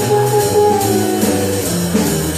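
Live jazz group playing a blues: electric guitar and double bass with drum-kit cymbal strokes repeating through it.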